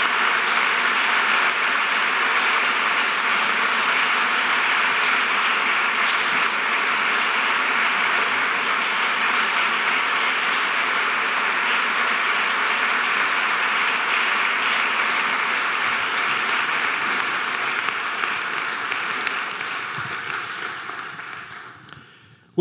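Audience applauding steadily, then dying away over the last few seconds.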